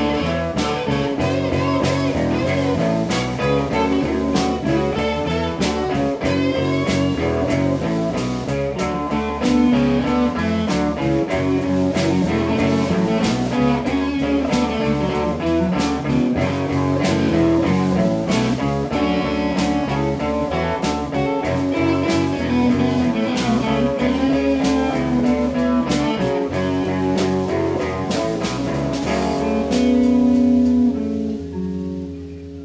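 A live rock band plays: electric guitars over a drum kit keeping a steady beat.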